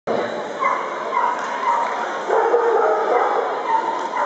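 A dog giving short, high yips and whines, several in the first two seconds and another near the end, over the chatter of a crowd.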